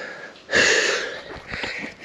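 A runner's loud, hard breath about half a second in, a breathy hiss that dies away over the next second: the heavy breathing of exertion on a steep uphill stretch late in a mountain marathon.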